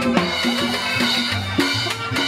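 Live Latin dance music from a street band: congas and a double bass keep a steady rhythm, with a walking bass line and sustained melody notes above.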